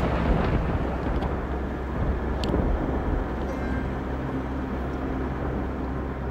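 A vehicle driving, with a steady rumble of engine and road noise and a low hum. It sets in loudly just before and holds steady, with one brief tick about two and a half seconds in.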